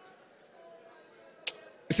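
Faint background music under the quiet of a pause, with one sharp click about one and a half seconds in. A man's voice starts right at the end.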